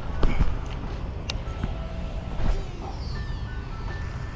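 Wind rumbling on the microphone, with a few light clicks and ticks, and a faint high whine falling near the end.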